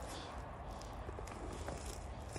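Footsteps through dry grass, a few faint crunches, over a steady low rumble of wind on the microphone.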